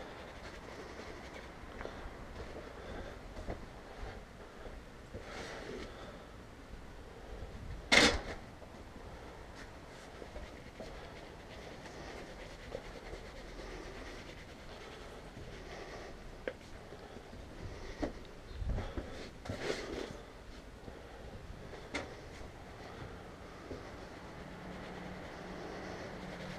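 A plastic cup scooping worm castings and scattering them over potting soil, with soft scraping and rustling. There is one sharp knock about eight seconds in and a few smaller rustles and knocks later.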